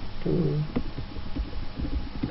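Computer keyboard being typed on: a few scattered key clicks over steady low background noise. A short murmured vocal sound comes near the start.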